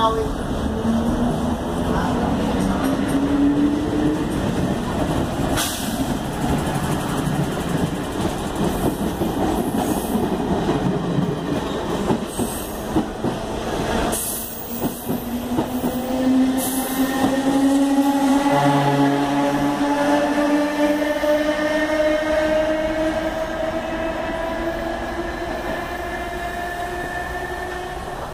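Budd/Mafersa Série 1100 electric multiple unit pulling away, its traction motors whining and rising slowly in pitch as it gathers speed, over steady wheel-on-rail rumble. A few sharp clicks come from the wheels running over the track.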